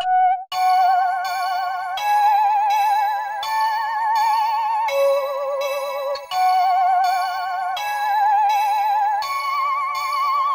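Omnisphere synth lead playing a simple looping melody of held notes with a strong, even vibrato, stepping to a new pitch about every second, layered over higher sustained tones. A short break about half a second in, then the melody runs on.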